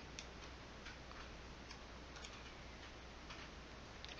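Faint, irregular small clicks and ticks over a steady low background hum, close to room tone.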